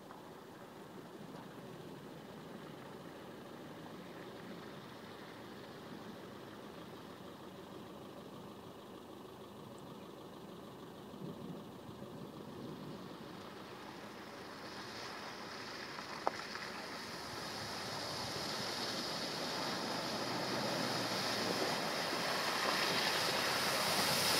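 Range Rover P38 driving toward the camera through a flooded, rutted track, its engine growing steadily louder as it nears. Over the second half, water splashing and churning under the wheels builds up. One sharp click about two-thirds of the way through.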